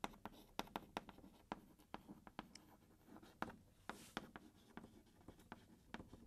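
Chalk writing on a chalkboard, faint: a string of short, irregular taps and scratches as the letters are formed, with a longer scrape about four seconds in.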